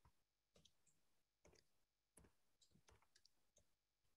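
Faint computer keyboard typing: a scatter of soft key clicks over near silence.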